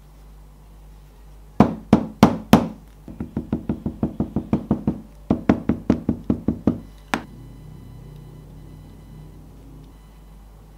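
Leather hammer tapping along the edge of a leather wallet pocket to flatten it on a cutting mat. There are four loud knocks about a third of a second apart, then two runs of quicker, lighter taps at about five a second, then one final knock.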